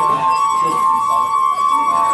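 Water-filled wine glasses sung by rubbing wet fingertips around their rims, giving two steady ringing tones close in pitch, held together without a break.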